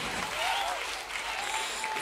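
Concert audience applauding, with a faint voice rising briefly over the clapping about half a second in.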